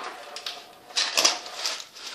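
Irregular clattering and rattling from handling a window and its mini blinds, a few short bursts with the loudest about a second in.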